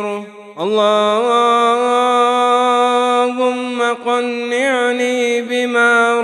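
A man's voice chanting an Arabic supplication (dua) in a slow, melodic recitation. After a short breath near the start he holds one long note for about three seconds, then ornaments it with quick turns in pitch.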